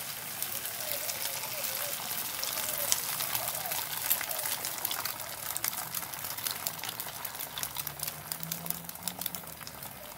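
Beaten egg sizzling and crackling in a hot nonstick frying pan as it is poured in. The crackle is busiest in the first few seconds and thins out toward the end.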